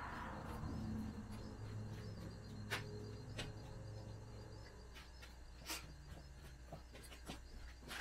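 Quiet workshop room tone with a steady low hum, broken by a few sharp clicks and knocks of someone handling things while searching for another spray can.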